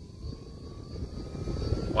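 Mitchell 12V portable car fan speeding up as its speed dial is turned up toward max: the motor's thin whine rises steadily in pitch while the rush of air from the blades grows louder.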